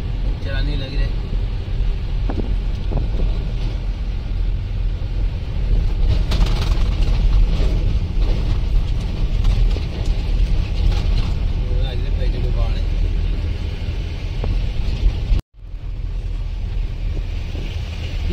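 Mahindra Bolero pickup driving, heard from inside the cab: a steady low engine and road rumble. About fifteen seconds in the sound cuts out for an instant, then resumes.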